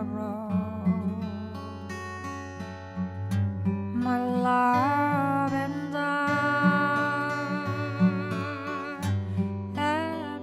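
Music: a woman's voice holding long, wavering notes over acoustic guitar accompaniment in a slow folk song.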